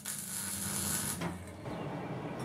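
Electric arc welding on a steel frame: a steady sizzling hiss that stops a little over halfway through.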